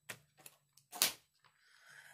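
A few short, sharp clicks and light rustles of things being handled below the frame, the loudest about a second in, with a quiet spoken "okay".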